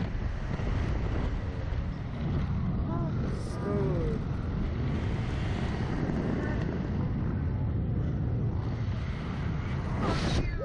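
Steady wind rushing over the onboard camera microphone as the reverse-bungee ride capsule flies and swings, with a few brief vocal yelps from the riders about three to four seconds in.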